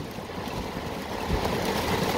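Heavy rain pelting a car's roof and windshield, heard from inside the cabin as a steady hiss that grows slightly louder.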